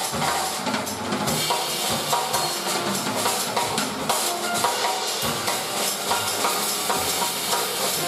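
Jazz piano trio playing an instrumental passage: grand piano, upright bass and a Yamaha drum kit, with the drums and cymbals prominent. The cymbal playing grows busier about a second in.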